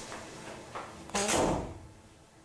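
A wooden door pushed shut, with one sudden thud about a second in, while soft background music fades out.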